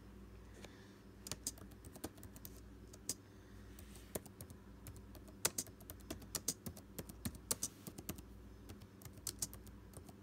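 Laptop keyboard keys clicking as text is typed, the keystrokes irregular, in short runs with brief pauses.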